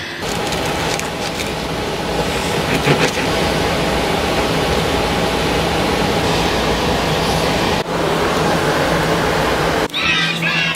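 Steady, loud rushing noise with a faint low hum underneath, broken by a brief dropout late on.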